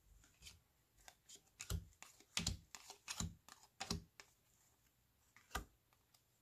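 Cardboard baseball cards being handled, flipped and laid down on a tabletop. A quick irregular run of soft taps and flicks lasts about four seconds, then one more tap comes near the end.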